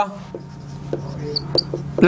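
Marker pen squeaking and ticking on a whiteboard as a line of an equation is written: a few short squeaks, most of them in the second half, over a low steady hum.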